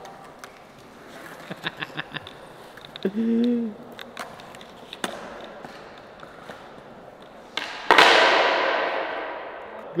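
Skateboard on a smooth concrete floor during a trick attempt. Light clicks of the board come first. About eight seconds in, the board cracks down hard on the floor, followed by a couple of seconds of wheel-rolling noise that fades out.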